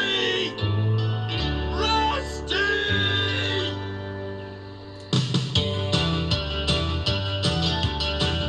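Music from a children's TV show: held notes that fade down, then a louder piece with a regular beat that starts suddenly about five seconds in, as the closing theme under the end credits.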